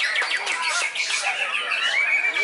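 Young white-rumped shama singing a fast run of high chattering notes and trills.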